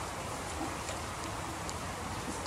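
Steady background hiss with a few faint clicks as an airsoft rifle and tactical gear are handled and turned.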